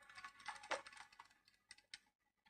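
Faint, quick irregular clicking and tapping, thinning out to a few sharp clicks near the end.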